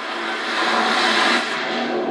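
Rushing roar of a crashing sea wave and plunge into water on a film trailer's soundtrack, played through a television's speakers. It swells and then falls away about one and a half seconds in, over a few steady low tones.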